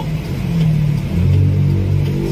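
A vehicle's engine running as it drives, heard from inside the cabin. Its note shifts lower a little over a second in.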